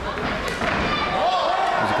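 Ringside sound at a live boxing bout: dull thuds from the ring, from punches or feet on the canvas, over a hall of voices, with a shout from someone near the ring about half a second in.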